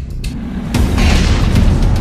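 Intro music with a deep cinematic boom that hits about three-quarters of a second in and carries on as a heavy rumble.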